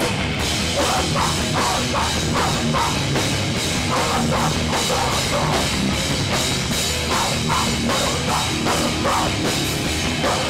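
Live hardcore punk band playing: distorted electric guitar, bass and a drum kit with cymbals, driving along at a steady beat, loud and unbroken.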